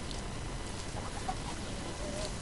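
Faint steady background noise with a few soft, short animal calls about a second in.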